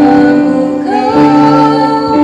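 A woman sings a slow church song into a microphone over electronic keyboard accompaniment. She holds long notes and slides up into a higher held note about a second in.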